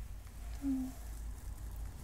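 A brief soft vocal hum about half a second in, over a low steady background hum.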